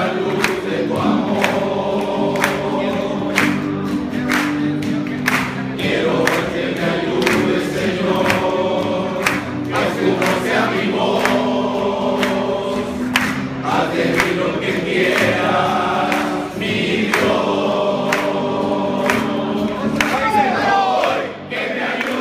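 Group of men singing a worship song together, over a steady, sharp beat.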